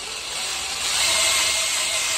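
A loud, steady hiss of a pressurised jet through a metal pipe pushed down a small hole in the bottom of a hand-dug well pit, with faint whistling tones; it starts and cuts off abruptly.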